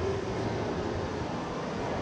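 Steady shopping-mall ambience: an even, continuous din of air handling and distant shoppers, with no distinct event standing out.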